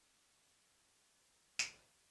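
A single sharp click about one and a half seconds in, from a small metal cap nut and a permanent marker knocking together as they are handled.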